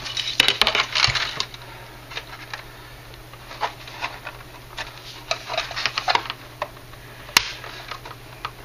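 Hard plastic parts of a Revell space shuttle orbiter kit clicking and knocking as the freshly glued payload bay is worked loose. A quick flurry of clicks comes at first, then scattered small clicks, and one sharp snap near the end.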